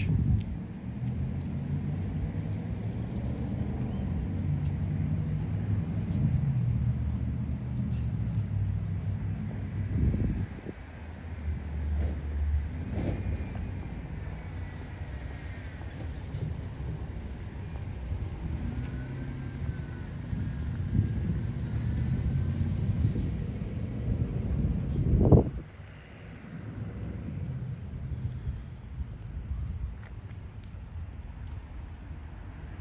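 Low, steady rumble of vehicle engines and road traffic, its hum shifting in pitch now and then. A single thump about 25 seconds in is the loudest moment, and the rumble is quieter after it.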